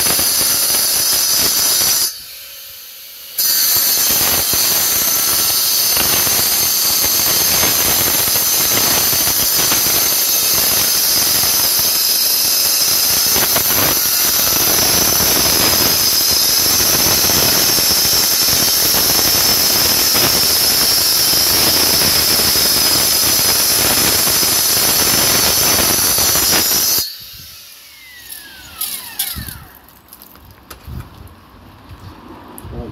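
Stihl battery-powered cut-off saw with a 9-inch diamond blade wet-cutting a stone paving flag, a loud, steady, high-pitched cutting squeal. It dips briefly about two seconds in, and near the end the blade comes out of the stone and the saw spins down.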